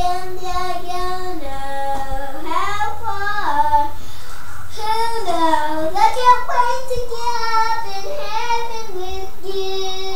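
A young girl singing to herself, long held notes joined by slides up and down.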